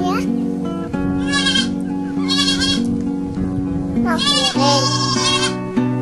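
Goats bleating several times, each call short and quavering, over background music with long held notes.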